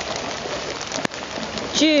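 Wellington boots wading through shallow floodwater, a steady splashing hiss of water, with a single sharp click about a second in.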